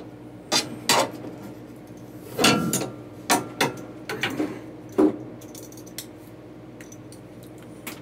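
Drafting tools handled on a drawing table: a series of sharp clicks and light clinks, about seven over the first five seconds, with a faint steady hum underneath.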